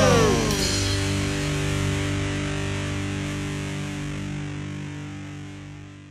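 The final distorted electric-guitar chord of a punk hardcore song, held and left to ring while it slowly fades out. Pitches sliding downward die away in the first half-second.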